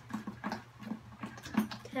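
A spoon stirring thick glue in a plastic tub, with short irregular knocks and scrapes against the tub's sides about three or four times a second, as baking soda is mixed in.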